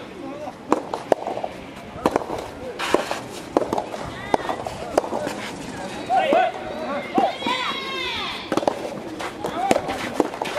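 Sharp, irregular pops of soft-tennis rackets hitting rubber balls, with players' voices shouting and calling, loudest in the second half.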